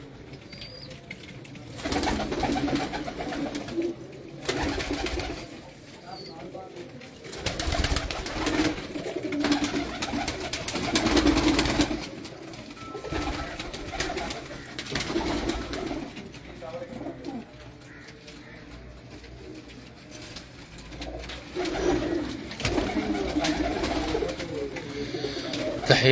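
Domestic pigeons in a loft cooing on and off, several low calls coming every second or two with short lulls between.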